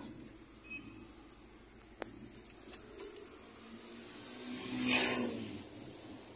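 A motor vehicle's engine and tyres rising and fading, loudest about five seconds in, over a quiet background. A single sharp click comes about two seconds in.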